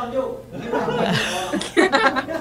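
People chuckling and laughing over talk.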